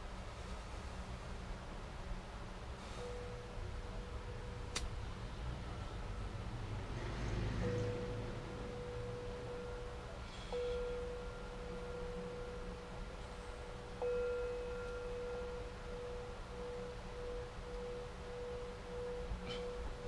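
A steady ringing tone at one pitch sets in about three seconds in and holds. It grows stronger in steps around the middle and wavers in level near the end. A single sharp click comes about five seconds in, over a low rumble.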